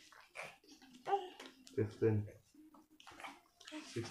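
Quiet speech in short phrases, with soft clicks and rustles of playing cards being handled in the pauses between.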